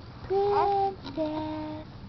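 Infant cooing: two long, held vowel sounds, the first sliding up into its note and the second a little lower.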